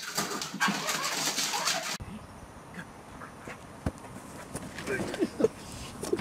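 A dog jumping at a door's mail slot, clattering the metal flap and scrabbling at the door in a dense, loud rattle for about two seconds. The rattle then stops abruptly. A quieter stretch follows, with a few short pitched cries about five seconds in.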